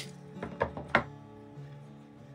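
Background music playing steadily, with three short knocks and clicks: one at the start, and two a little after half a second and at about one second in.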